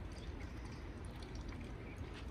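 Faint small water sounds of a pigeon drinking from its water dish, over a steady low rumble.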